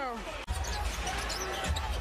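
Basketball being dribbled on a hardwood court: repeated low thuds that begin after an abrupt cut about half a second in.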